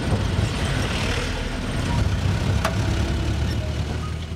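Car engine and road noise heard from inside the cabin while driving through city traffic: a steady low rumble, with one sharp click a little past halfway.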